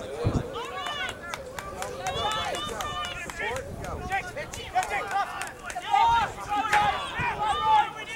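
Several voices shouting across the field during play, overlapping and hard to make out, with frequent short clicks.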